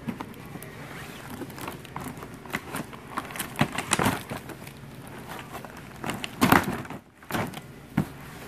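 Handling noise: rustling, light knocks and a hand brushing over cardboard firework boxes, with a louder scrape about six and a half seconds in.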